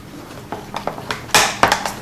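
Chickpea-flour batter being stirred in a glass measuring cup. Soft mixing noise gives way to a run of sharp clinks and scrapes of the stirring utensil against the glass in the second half.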